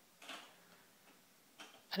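Faint, brief taps and rubbing of a baby's hands on a plastic toy activity table: one soft sound near the start and another near the end.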